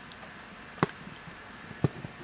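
Quiet room tone with two short, sharp clicks about a second apart.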